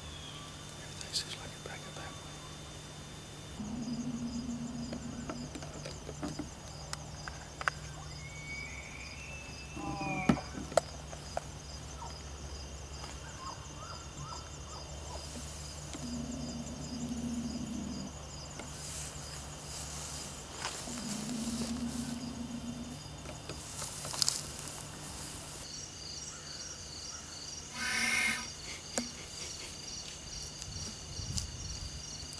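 An elk bugle: a whistle that rises to a high held note about eight seconds in, then breaks into a quick run of lower grunting notes, with another short call near the end. Insects chirp steadily in the background.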